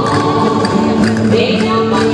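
Music for a traditional Valencian folk dance: a held melody stepping from note to note, with voices singing, at a steady, loud level.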